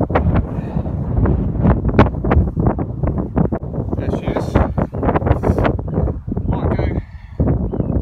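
Wind buffeting the microphone: a loud, gusty low rumble that runs on without a break, with rustling and knocks of close handling mixed in.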